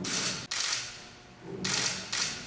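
A clear plastic garapon lottery drum being turned by hand, with the hard food inside (grapes, cherry tomatoes and macadamia nuts) tumbling and rattling against the walls. The rattling comes in two spells, each a pair of short bursts: one at the start and another near the end.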